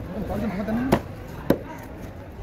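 Large knife chopping into a whole snapper on a wooden board: two sharp chops about half a second apart in the second half.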